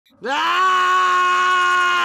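A man's long, loud scream, rising in pitch about a quarter second in and then held on one high note.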